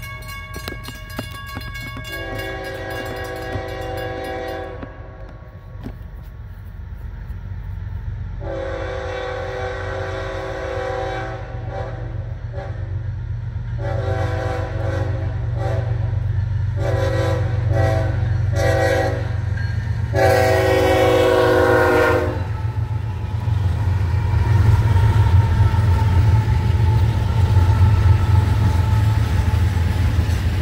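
Diesel freight locomotive's horn sounding for a grade crossing: a run of long blasts with shorter ones near the end, the last ending about 22 seconds in. Under it a crossing bell rings, and the low rumble of the four-locomotive train grows louder as it reaches the crossing near the end.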